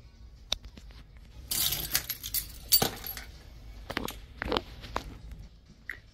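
Handling noise: scattered clicks and knocks, with a louder burst of clinking and rattling about one and a half to three seconds in.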